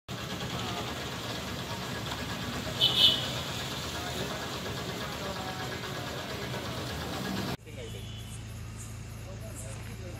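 A vehicle engine running with voices in the background, and a short, loud high-pitched sound about three seconds in. Near the end it cuts to a quieter steady low hum with faint voices.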